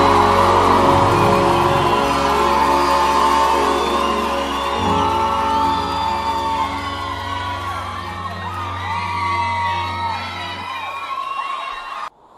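The closing chords of a live pagode song ring out and fade, with the audience cheering and whooping over them; the sound then stops abruptly.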